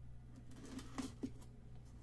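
Light rustling and a few soft clicks as hands handle and open a sealed cardboard box of trading cards, loudest about a second in, over a low steady hum.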